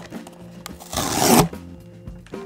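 A short rip of thin cardboard about a second in, lasting about half a second: the perforated tear tab of a small blind box being pulled open and tearing all the way through. Quiet background music plays under it.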